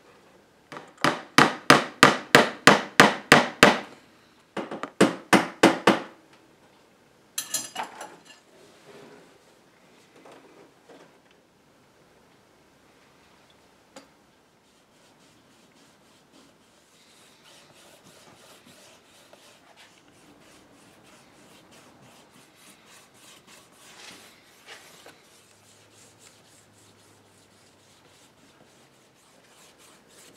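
Quick hammer taps driving small nails into a wooden mirror frame, in three runs: about ten taps, a short pause, six more, then a few. After a quiet spell, faint rubbing of a cloth polishing pad over the shellac-finished mahogany frame during French polishing.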